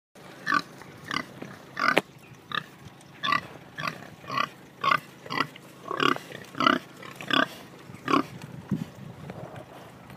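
Pig grunting at close range: a rapid series of about thirteen short grunts, roughly one every half second, stopping shortly before the end.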